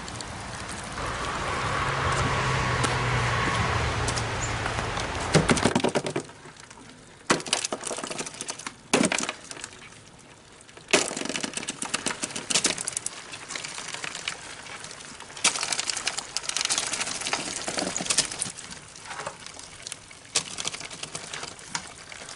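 Live crayfish crawling over one another in a plastic cooler: scattered small sharp clicks and rustles of shells and legs against the plastic, with quiet gaps between them. For the first six seconds a steady rushing noise with a low hum covers everything, then cuts off suddenly.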